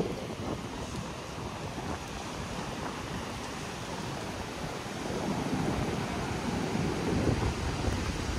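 Rough sea surf breaking on the beach under a strong wind, with the wind also buffeting the microphone. A steady rush of noise that grows a little louder about five seconds in.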